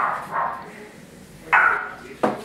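A dog barking: three short barks, the last about a second and a half in.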